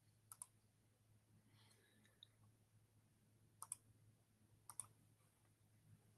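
Faint computer mouse clicks over near silence: three quick pairs of clicks, one near the start and two more about a second apart past the middle.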